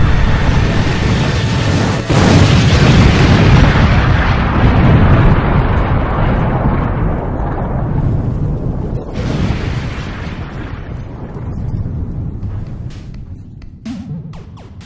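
Loud rumbling blast sound effect from an animation. It hits again sharply about two seconds in, then slowly fades, with another burst about nine seconds in.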